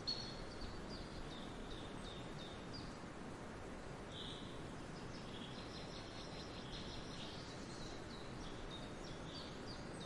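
Faint outdoor ambience: small birds chirping in short high calls scattered through, one a little louder about four seconds in, over a steady low background noise.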